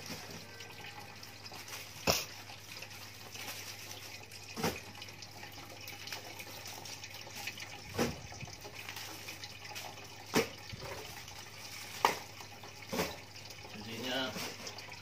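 Plastic DVD cases being set down and stacked on a tiled floor: six short, sharp clacks a couple of seconds apart, over a steady hiss.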